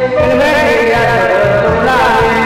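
A Burmese song: a singer holds a long, wavering note, then slides through ornamented turns that climb toward the end, over accompaniment with repeated low strokes.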